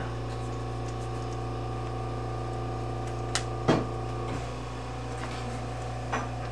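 Steady background hum made of several fixed tones, with one sharp click a little over three seconds in and a brief soft rustle about half a second later.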